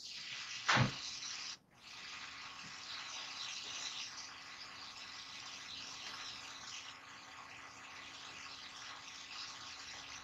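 Faint steady hiss with a thin low hum underneath, after a brief short vocal sound about a second in.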